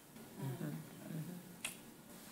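Faint, low mumbled speech, then a single sharp click near the end.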